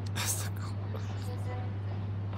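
A steady low electrical hum, with a short whisper near the start and faint voices after it.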